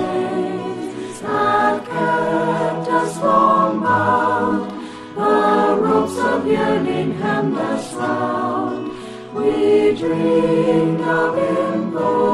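A choir singing in several-part harmony, in phrases a few seconds long with short breaks between them.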